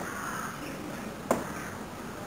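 A man's short, sharp grunt of exertion, pushed out with a rep of a Bulgarian bag exercise, once a little past halfway. The grunts recur about every second and a half, one per rep.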